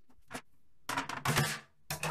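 Plastic rubbish bag rustling and scraping as it is handled: a short rustle, then a longer, louder one about a second in.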